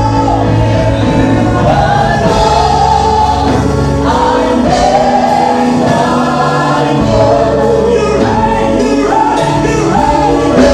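Gospel worship song: a woman sings lead into a handheld microphone over an instrumental backing with long held bass notes, with other voices singing along. The music is loud and steady, with no break.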